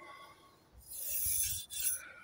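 A fingertip rubbing along the scuffed, flaking paint of an aluminium mountain-bike frame: a rasping rub that lasts about a second, starting about a second in.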